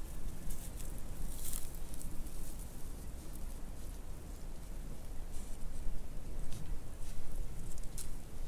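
Footsteps walking through tall dry grass and light snow, in an uneven patter, over a steady low rumble.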